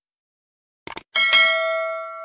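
A quick double mouse-click sound effect about a second in, then a bright bell ding that rings on and slowly fades. This is the sound effect of a subscribe-button and notification-bell animation.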